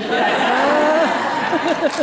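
An audience bursting into loud laughter, many voices laughing at once, breaking out suddenly.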